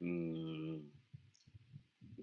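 A man's voice holds one drawn-out syllable for under a second, heard over an online voice-chat connection. It is followed by a few faint clicks.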